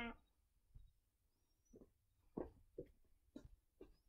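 Faint footsteps on a concrete porch, about six soft irregular steps.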